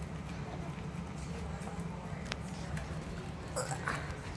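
Two dogs eating soft cake out of a cardboard box: wet chewing and licking with many small clicks, and one sharp click a little past halfway.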